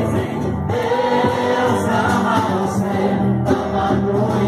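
Music: a crowd singing a religious mission song together.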